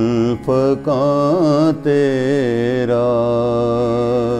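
A man singing an Urdu Sufi kalam, drawing out long held notes with wavering ornaments and taking brief breaths between phrases.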